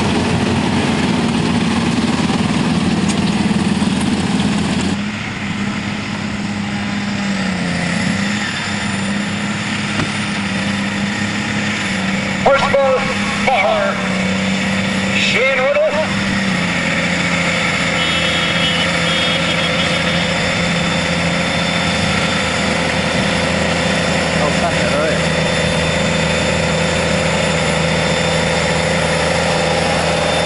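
Large farm tractor diesel engines running under load during tractor-pull runs, a steady drone with an abrupt change about five seconds in. A voice is briefly heard between about twelve and sixteen seconds in.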